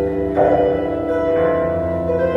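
Solo bandura, the Ukrainian many-stringed plucked lute, played in chords. The plucked notes ring on, with a new chord struck about half a second in and more notes joining near the end.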